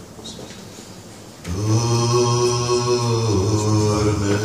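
Unaccompanied man singing a Sephardic lullaby in Ladino. After a short pause for breath, he holds one long low note from about a third of the way in.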